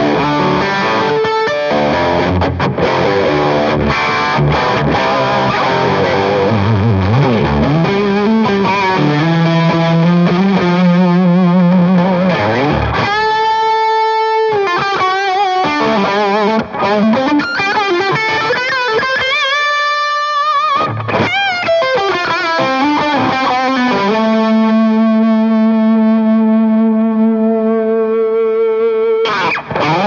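Gibson Firebird electric guitar played with overdriven distortion. Busy chordal riffing gives way about halfway through to sustained lead notes with vibrato, ending on a long held note.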